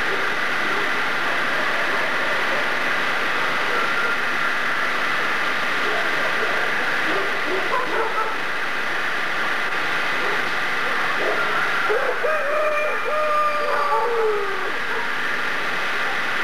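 Steady hiss and hum of an old video soundtrack, with a few faint, short pitched calls about three-quarters of the way through.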